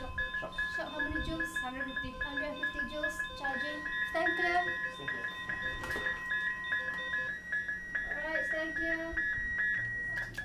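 Electronic alarm tones from a patient monitor and defibrillator: a rapid repeated beep runs throughout, with a steady tone that stops about seven seconds in and a higher steady tone that starts about three and a half seconds in, as the defibrillator is set up to shock. Indistinct voices talk underneath.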